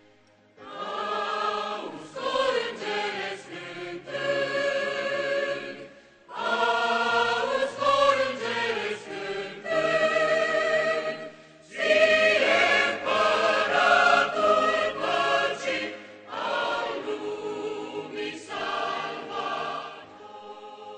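Large mixed choir of men's and women's voices singing in parts with keyboard accompaniment, in four phrases with short breaks between them; the singing starts about half a second in.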